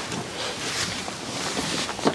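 Wind blowing on the microphone: a steady rushing noise with no pitch.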